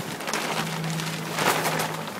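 Crackling, rustling handling noise over a steady low hum, loudest about one and a half seconds in.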